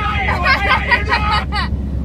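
High-pitched voices chattering and stopping about a second and a half in, over the steady low rumble of a car's cabin.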